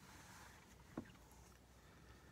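Near silence: the quiet room tone of a parked car's cabin, with one faint short click about a second in.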